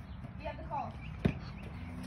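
A basketball bouncing once on hard-packed dirt: a single sharp thump a little past halfway, with a short low ring after it.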